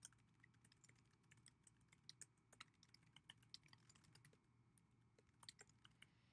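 Very faint typing on a computer keyboard: irregular key clicks, several a second with short pauses, as a line of text is typed.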